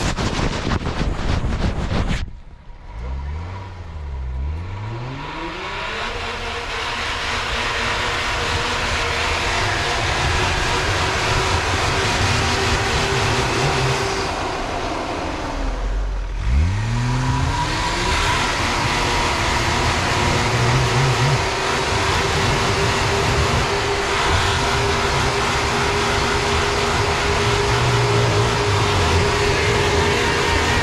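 Nissan Patrol 4x4 engine working hard under load on a snowy climb: it revs up a few seconds in, holds high and steady, drops briefly about halfway, then revs up again and holds. A short burst of rough noise comes before the first rev.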